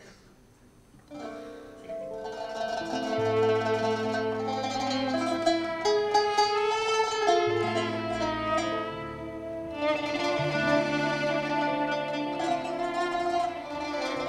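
Arabic ensemble music from violins, accordion, double bass and plucked strings, beginning about a second in after near silence and going on with held, changing melody notes over a steady bass line.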